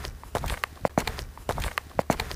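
Footsteps: a quick, irregular run of steps with sharp clicks.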